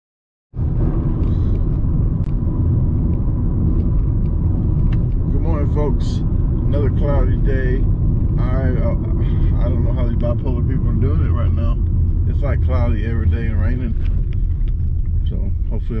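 A car being driven, heard from inside the cabin: a steady low road and engine rumble that starts suddenly about half a second in, with indistinct voices over it.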